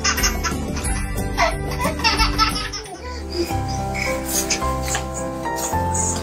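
A baby laughing in bursts over background music during the first half; after a break about halfway through, only the music goes on.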